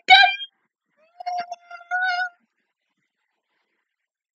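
A high-pitched voice: laughter trailing off in the first half-second, then a second high-pitched vocal sound lasting about a second, ending well before the close.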